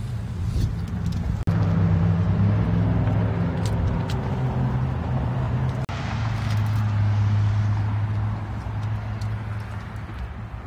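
Car engine idling: a steady low hum, louder from about a second and a half in.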